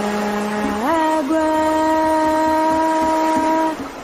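Umbanda chant (ponto) to Iemanjá being sung: a voice holds one long note, glides up to a higher note about a second in, holds it, and breaks off shortly before the end.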